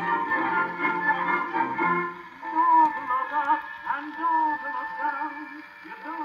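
HMV Model 460 table gramophone playing a shellac 78 record through its pleated Lumière diaphragm instead of a horn. An orchestra plays, and about two seconds in a singing voice with vibrato takes over.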